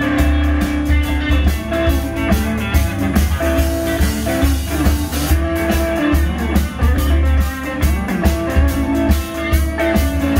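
A live blues-rock band playing an instrumental passage: two electric guitars, bass guitar and drum kit, with a steady beat.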